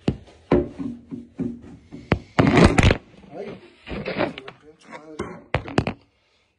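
Handling clatter: a string of knocks and clicks, with a loud rattling burst about two and a half seconds in and a quick run of clicks near the end, mixed with brief muttering.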